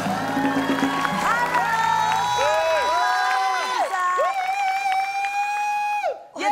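Band theme music with drums and bass, stopping about two to three seconds in, overlapped and followed by a studio audience cheering, with rising and falling whoops and one long held shout near the end.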